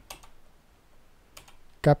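A few light computer keyboard keystrokes: a couple right at the start and another about a second and a half in.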